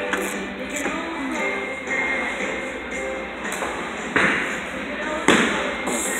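Bowling alley din of background music and faint voices, with two heavy thuds near the end, typical of bowling balls dropping onto the lanes.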